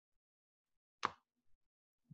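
Near silence, broken about a second in by one short mouth sound from one of the men, such as a brief chuckle or lip smack.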